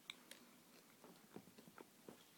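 Faint chewing of a mouthful of crunchy, cheesy pizza crust, with scattered small clicks.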